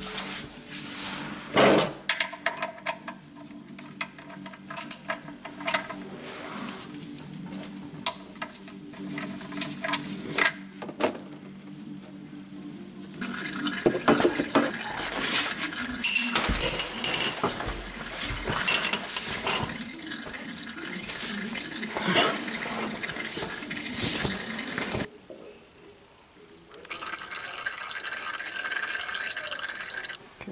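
Clicks and knocks of a wrench on the oil-pan drain plug, then warmed-up engine oil pouring from the drain hole into a catch pan as a steady splashing stream, starting about halfway through and easing briefly near the end before it picks up again.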